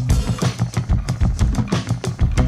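A band jam breaks down to a drum fill: a fast run of drum-kit hits while the sustained bass notes drop out.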